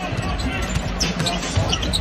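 Basketball being dribbled on a hardwood court, a few bounces heard over the arena crowd's background noise.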